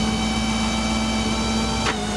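Tow truck's PTO-driven hydraulic system whining steadily over the running engine as the wheel lift retracts toward the truck, with one short click near the end.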